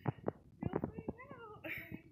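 A woman crying with emotion, muffled behind her hands: high, wavering whimpers that slide down in pitch, with a sharp breath near the end.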